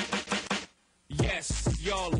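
Hip hop music: a run of quick, sharp chopped hits that breaks off for a moment, then about a second in the beat comes in with heavy bass and a voice over it.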